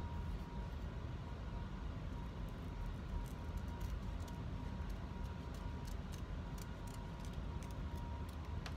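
Scissors snipping paper in short, faint cuts over a steady low rumble from a home furnace.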